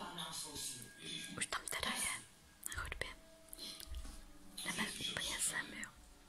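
A person whispering in several short phrases, with brief pauses between them.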